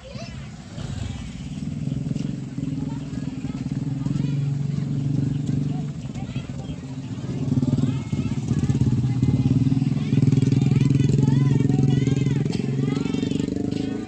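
Small motorcycle engines running at low speed as a scooter and a motorbike ride past close by, growing louder over the second half.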